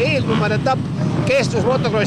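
A man talking into a microphone, loudest throughout, over the steady running of many off-road motorcycles idling together on a start grid.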